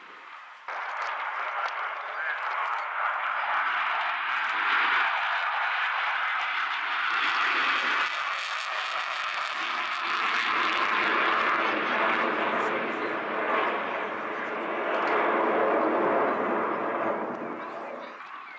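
Jet roar from a Sukhoi Su-27's twin AL-31F turbofan engines in display flight, with afterburners lit. The roar cuts in abruptly about a second in, swells and eases as the fighter manoeuvres, and fades near the end.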